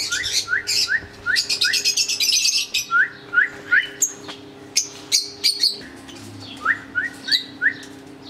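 Aviary birds, lovebirds among them, chirping: runs of short rising chirps at about three a second, and a fast burst of shrill high chirps between about one and three seconds in, over a faint steady hum.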